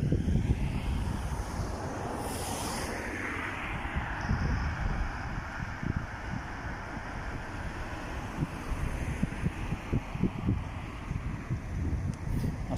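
Wind buffeting the microphone in uneven low gusts over a steady rushing hiss, with a brief sharper hiss about two seconds in.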